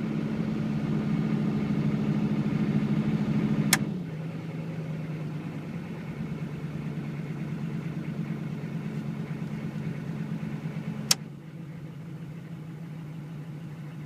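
GM 6.5-litre diesel V8 idling on both high-idle switches at about 1600 rpm. A switch clicks about four seconds in and the engine note drops to a lower idle; another click about eleven seconds in brings it down again, quieter.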